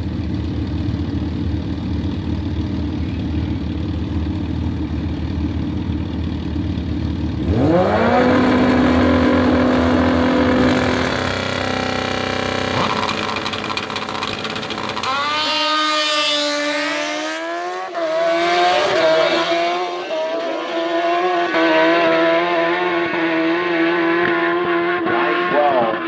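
Two inline-four 1000 cc sportbikes, a Kawasaki ZX-10R and a Suzuki GSX-R1000, idle at a drag-strip start line. About seven seconds in they rev up and hold a steady launch rpm. Then they launch and accelerate hard down the quarter mile, the pitch climbing and dropping back at each of several upshifts.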